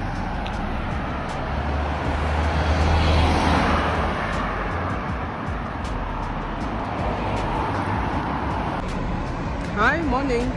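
Road traffic passing close by on a street, a steady rush of tyre and engine noise that swells with a low rumble about two to four seconds in, as a vehicle goes past.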